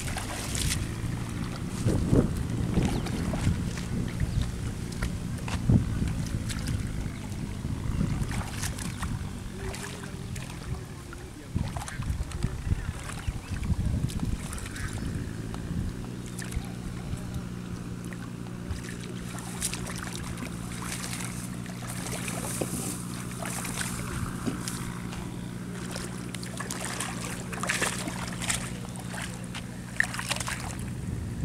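Water sloshing and splashing in shallow water as a cast net is hauled in and gathered by hand, the splashes busiest in the first half. Under it runs a steady low engine drone that grows clearer about halfway through.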